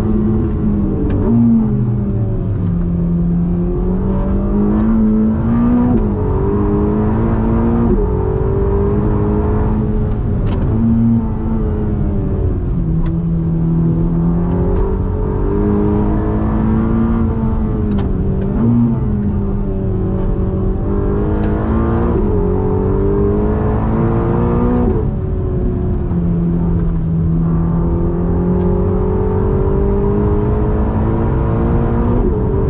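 Ferrari Roma's twin-turbo V8 heard from inside the cabin, driven hard: the engine note climbs in pitch under acceleration and drops back sharply several times, with steady stretches between.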